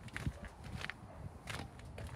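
Faint footsteps on tarmac, a few soft scuffs and steps over a quiet outdoor background.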